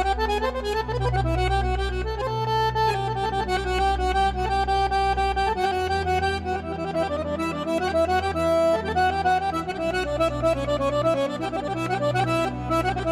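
Accordion playing a traditional melody in quick, changing notes over a steady low bass.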